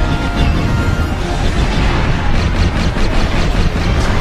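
Soundtrack music over a heavy, steady rumble of space-battle sound effects, with a quick run of sharp blaster shots or blasts in the second half.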